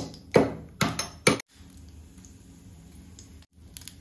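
About five sharp knocks in the first second and a half: green cardamom pods being pounded to crack them open for a tadka. After that comes faint, steady sizzling of cumin seeds in hot ghee in a small tadka pan.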